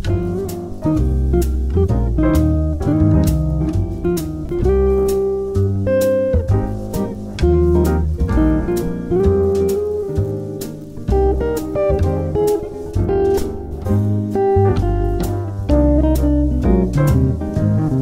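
Hollow-body archtop electric jazz guitar playing chords and single-note jazz lines in an upbeat tune, over a backing of low bass notes and a steady, even beat.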